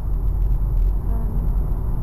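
Steady low rumble of engine and road noise inside a moving car's cabin, picked up by a dashcam.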